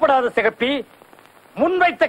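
Speech: film dialogue in two short phrases with a pause of about three-quarters of a second between them.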